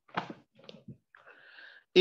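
Handling noise as a textbook and phone camera are moved: one sharper rustle or knock, a few fainter ones, then a soft rubbing rustle.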